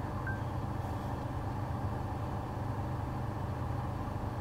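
Steady low hum inside a car cabin, with a faint short blip about a third of a second in.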